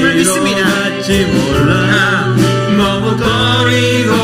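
Korean praise song sung by a church worship team with instrumental band accompaniment, steady and continuous through the verse.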